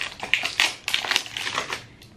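Rustling and crinkling of a small cardboard cream carton and its wrapping as it is handled and opened by hand, a quick run of irregular scratchy crackles.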